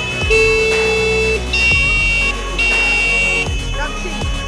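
A buzzer-like electronic tune from a children's battery-powered mini ATV's sound button: long, steady, high beeping notes held about a second each, three or four in a row.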